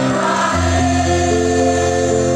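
Live band music through a loud PA system: held chords, with a deep bass note coming in about half a second in.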